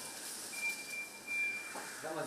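High, steady electronic warning tone from a Nichiyu electric reach-truck forklift, breaking off briefly and then stopping about one and a half seconds in.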